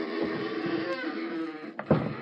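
Radio-drama sound effect of a heavy bunk being forced to swing out on a hidden pivot: a sustained strained noise with a wavering tone, then a sharp knock near the end as it gives way.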